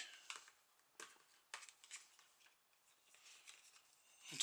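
Faint, brief scrapes and clicks of a plastic card being worked into the gap of an Acer laptop's plastic screen bezel to release its latches, a few times in the first two seconds, otherwise near silence.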